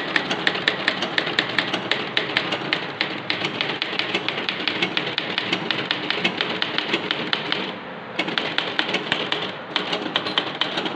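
Godrej manual typewriter being typed on fast: an even run of typebar strikes at about seven a second, with one brief pause about two seconds before the end.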